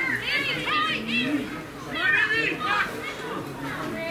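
Young players' high-pitched shouts and calls, several in quick succession in the first second or so and again about two seconds in.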